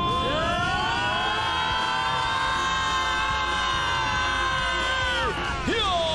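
Several voices yelling together in one long battle cry as fighters charge: the cry rises at the start, holds for about five seconds and falls away near the end.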